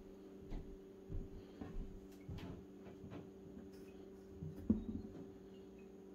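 Faint small knocks and taps as the bulb of a magnetic levitation desk lamp is handled and held up under the magnet on its arm, over a steady low hum.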